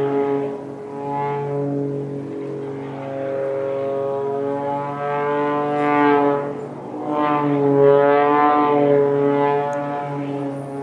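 Aerobatic propeller plane's engine droning overhead while it trails smoke through loops, its pitch and loudness swelling and falling as it climbs and dives; it is loudest about six and eight seconds in.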